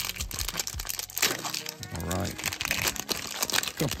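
Foil trading-card pack wrapper crinkling and crackling as it is torn open and peeled back by hand, with background music.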